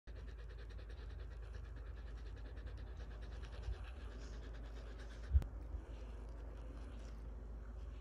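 Siberian husky panting rapidly, the panting fading after about three seconds. A single sharp knock about five seconds in.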